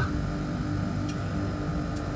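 Steady machine hum of a Temperzone OPA 550 package air-conditioning unit running in heating with both compressor stages on: a low rumble under one steady low tone, with one faint tick about a second in.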